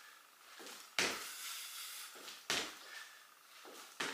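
Trainers landing on a laminate floor from small hops on the toes: two sharp thuds about a second and a half apart, each with a brief scuff after it.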